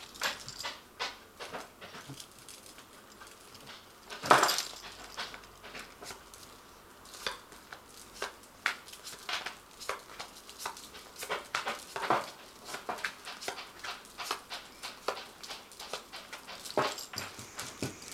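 A Mystic Mondays Tarot deck being shuffled and its cards laid out one by one on a cloth-covered table: faint scattered taps and card slaps, with one louder short sound about four seconds in.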